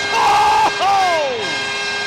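Arena goal horn after a goal, a pitched blast that slides down in pitch about a second in, over a cheering crowd.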